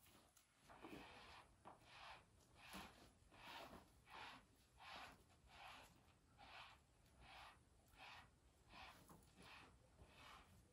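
Faint, even strokes of a gloved hand rubbing over a donkey's coat, one soft swish about every 0.7 seconds.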